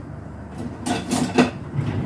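Cookware clattering at a stove: a quick cluster of clinks and knocks about halfway through, over a low steady rumble.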